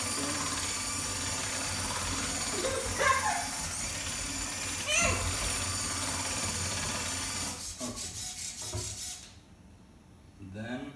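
A Jimu robot's servo motors whirring as it drives and turns on its tracks, a steady buzzing whine that stops about nine seconds in. For its last second and a half the motor sound comes in quick pulses, about five or six a second.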